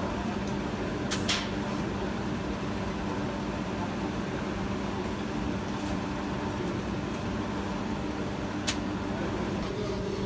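Flatbread-bakery machinery, a dough roller and a conveyor oven, running with a steady mechanical hum, with two short clicks, one about a second in and one near the end.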